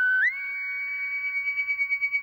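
Closing note of a sung music sting: a sustained electronic tone that slides up a step just after it begins, then holds steady with a pulsing wobble that grows stronger.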